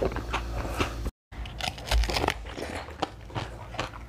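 Crunching bites and chewing of frozen basil seed ice, heard as a run of sharp crackling clicks. The sound drops out completely for a moment just after a second in.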